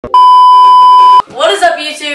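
A single loud, steady test-tone beep, the tone that goes with TV colour bars, lasting about a second and cutting off abruptly. Voices follow near the end.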